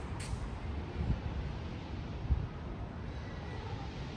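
Wind buffeting the microphone outdoors: an uneven low rumble that swells in gusts, with a short hiss just after the start and a sharp thump a little past halfway.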